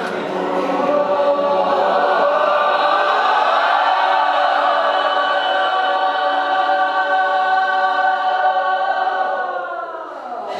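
A group of voices singing one long held chord together, the pitches drifting a little and then sliding down in unison at the end.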